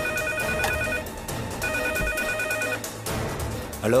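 Telephone ringing with a trilling ring about a second long, twice, with a short gap between, then stopping; it is answered with a "Hello?" near the end.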